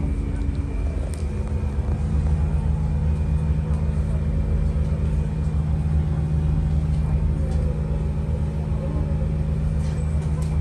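Passenger train running, heard from inside the carriage: a steady low rumble with a constant motor hum, its tones shifting slightly about two seconds in.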